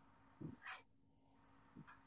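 Near silence: quiet room tone with a faint steady hum, broken by a few faint, brief sounds about half a second in and again near the end.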